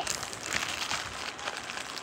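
Plastic mailer bag crinkling and rustling as it is handled, in a few faint scattered rustles.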